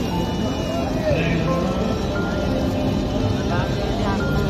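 Devotional aarti singing with musical accompaniment, a voice holding long notes with slow glides between them.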